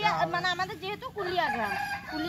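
A rooster crowing, one long held call in the second half, over people talking.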